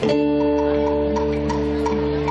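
Music begins suddenly: a held chord with short plucked notes repeating about three times a second over it.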